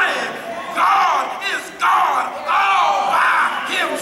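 A preacher shouting in long, sliding cries, with the congregation calling out along with him.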